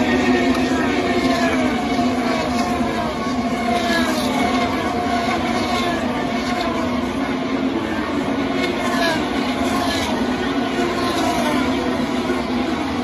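IndyCar race cars' 2.2-litre twin-turbo V6 engines at racing speed on the oval. Cars pass one after another, each engine note falling in pitch as it goes by, over a steady continuous drone.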